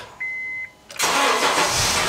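A short high beep, then about a second in a car engine is cranked and starts, loud from the moment it catches.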